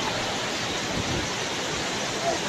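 Waterfall: the steady rush of falling water at Kutralam's Five Falls.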